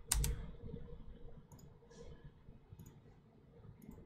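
Computer keyboard clicks: one firm key press right at the start, then a few faint, scattered clicks.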